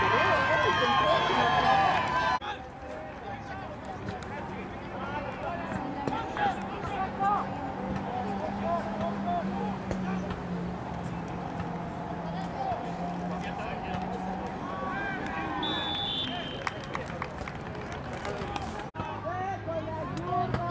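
Voices of football players and sideline spectators calling and talking across an outdoor field, louder in the first two seconds, then fainter and scattered over a steady low hum. A brief high whistle sounds about three-quarters of the way through.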